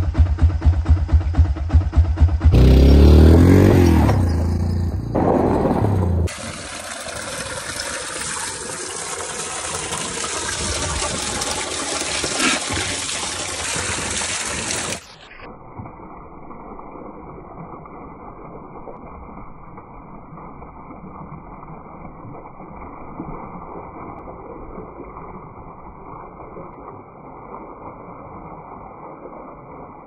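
A quad bike's engine running with a pulsing beat for the first few seconds. Then water gushes and splashes from a pipe into a cattle trough for the rest, turning duller and quieter about halfway.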